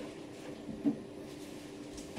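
Quiet kitchen room tone: a faint steady hum with one small knock a little under a second in.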